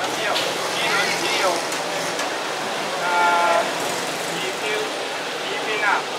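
Busy street ambience, a steady wash of noise with voices in the background, and a short flat horn toot about three seconds in.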